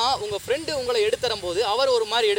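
A man speaking continuously; only speech is heard.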